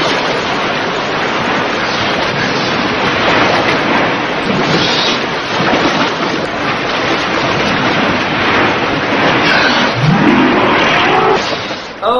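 Heavy splashing and churning water, a dense steady rush, with a short rising cry near the end.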